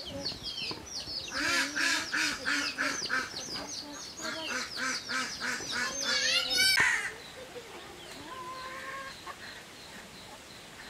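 Domestic fowl calling: a quick run of repeated honking calls, about four a second, that stops abruptly about seven seconds in, with high falling chirps at the start.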